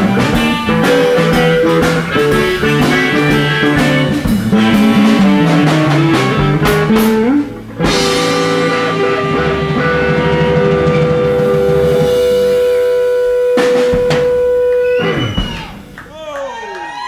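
Live blues band with electric guitar and drums playing busily; a little past halfway the playing breaks off for a moment and a final chord is held for several seconds, then stops shortly before the end as the song finishes.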